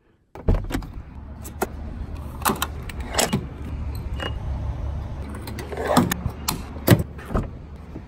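Clicks and knocks of a car and a gas pump being handled, over a steady low rumble, with a short faint beep about halfway through as a pump button is pressed.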